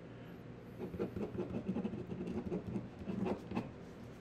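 Pen writing on paper: a signature being scratched onto a chapbook page in quick, irregular strokes.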